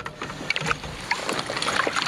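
Water splashing beside a kayak as a hooked kokanee salmon is brought in and scooped into a landing net, with a few short clicks and knocks.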